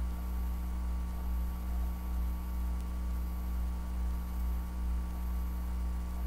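A steady low hum with a slow, regular swell in level, joined by a few fainter steady tones higher up.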